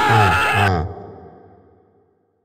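Horror-film soundtrack sting: high, piercing tones over a low pulsing beat of about four a second. It cuts off less than a second in and its echo dies away to silence.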